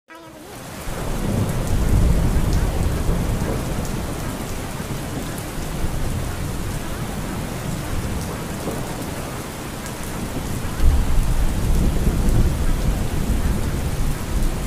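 Recorded thunderstorm: steady heavy rain fading in at the start, with low rolling thunder swelling a couple of seconds in and again later.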